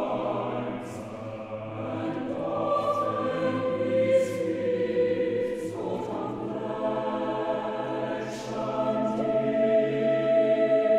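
Mixed choir singing sustained, slowly changing chords, with the hiss of sung 's' consonants standing out several times.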